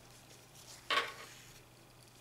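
A single light clink about a second into an otherwise quiet stretch of hand-sewing, the sound of a small hard object knocking against the tabletop.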